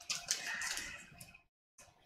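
Rustling and light clicks of a tobacco pouch being handled and picked up. The sound stops about a second and a half in.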